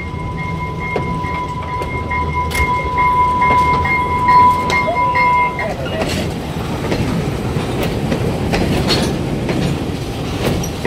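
Railway wagons being shunted, rumbling and rolling slowly with scattered clanks and clicks of wheels and couplings. A steady high-pitched tone runs through the first half and stops a little past halfway.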